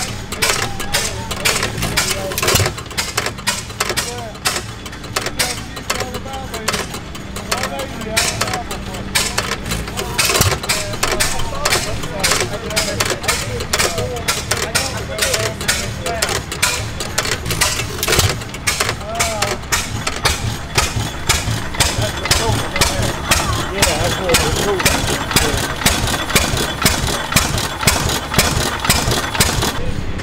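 Antique hit-and-miss stationary engines with heavy flywheels running, a quick, continuous string of sharp firing pops and knocks, with voices in the background.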